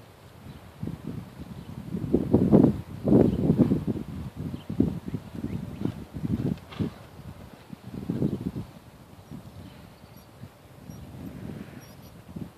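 A horse cantering on sand footing: dull, muffled hoofbeats that grow louder as it passes close, strongest about two to four seconds in and again around eight seconds.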